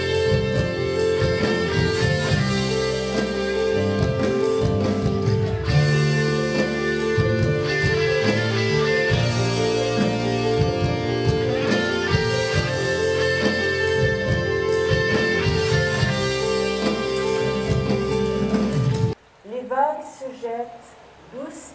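Live band playing rock music led by electric guitar, with keyboard and drums, stopping suddenly about a second before the end.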